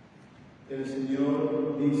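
Quiet room tone, then about two-thirds of a second in a priest's voice begins reciting the entrance antiphon of the Mass, the first word drawn out on a held pitch, amplified through the church's public-address microphone.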